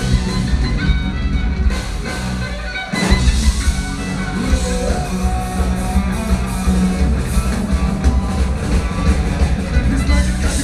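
A metal band playing loud live, with heavy drums and distorted guitars over a dense full-band sound. The low end drops out briefly just before three seconds in, then the full band crashes back in.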